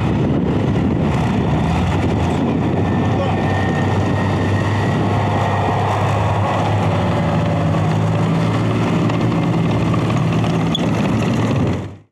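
BMP tracked infantry fighting vehicle's UTD-20 diesel engine running steadily as the vehicle drives across snow-covered ground.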